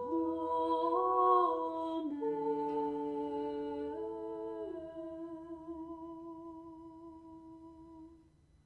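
A woman humming a slow, wordless melody in a few long held notes, sliding between them, then fading away over the last few seconds.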